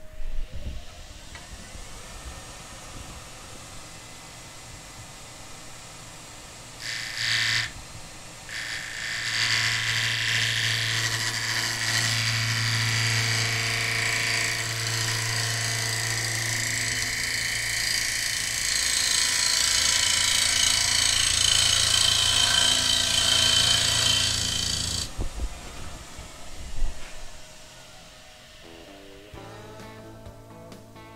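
Bowl gouge taking light cuts on a square sycamore blank spinning fast on a wood lathe: a brief cut about seven seconds in, then a loud, steady buzzing cut from about eight seconds until it stops abruptly near 25 seconds. Before and after the cutting, only the lathe running is heard.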